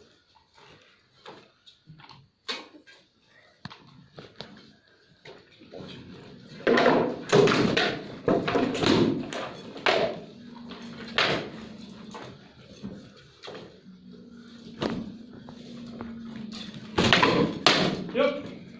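Rattan swords striking a shield and armour in an armoured combat bout: sharp cracks and thuds, scattered at first, then a flurry of blows from about seven to eleven seconds in and another hard exchange near the end, with a faint steady hum underneath in the second half.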